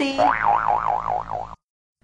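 A cartoon 'boing' sound effect: a wobbling tone whose pitch swings up and down about four times a second, cutting off suddenly about one and a half seconds in.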